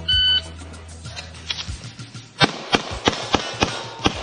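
A shot timer beeps once at the start. About two seconds later a 9mm Glock 34 pistol fires a rapid string of about six shots, roughly three a second.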